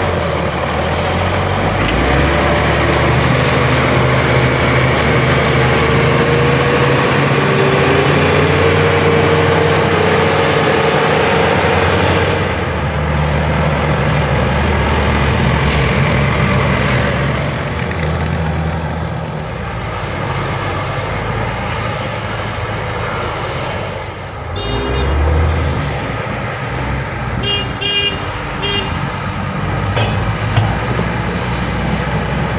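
LiuGong B160C crawler bulldozer's diesel engine running steadily under load as it pushes earth and gravel. A vehicle horn sounds a few short toots near the end.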